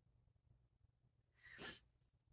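Near silence: room tone with a faint low hum, and one short, soft hiss about one and a half seconds in.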